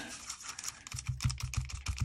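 Light, irregular clicks and taps from handling a plastic water brush pen over a paper towel while bringing water to its brush tip, with a run of soft low thumps in the second half.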